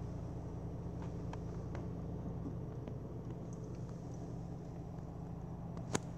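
Chrysler Ypsilon's 1.2-litre four-cylinder petrol engine idling steadily, heard from inside the cabin as a low hum, with a few light clicks and one sharper click just before the end.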